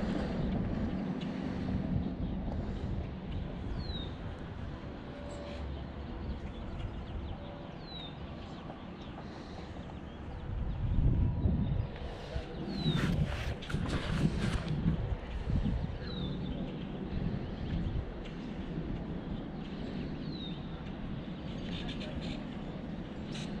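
A bird's short, falling high call repeats about every four seconds, over a low rumble of wind on the microphone that swells in gusts around the middle, with a few small clicks of rod and reel handling.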